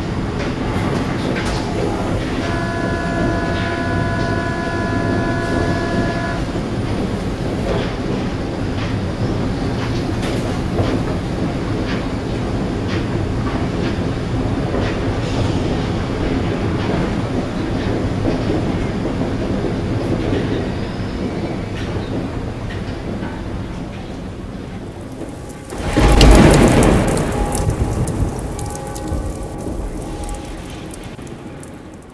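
Underground metro train running, heard from inside the carriage: a steady rumble and rattle of the wheels on the track. A few seconds in, a steady tone of several notes sounds for about four seconds. About 26 s in, a loud rush of noise swells suddenly and then fades.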